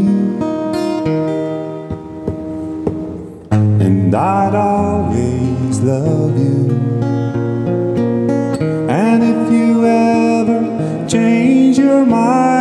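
Acoustic guitar music in an instrumental break of a slow ballad, with gliding melody notes over the strummed chords. The music drops quieter about two seconds in and comes back in full at about three and a half seconds.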